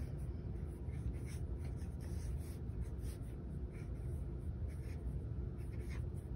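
Marker tip making short, light strokes on sketchbook paper, a faint irregular scratching over a low steady background hum.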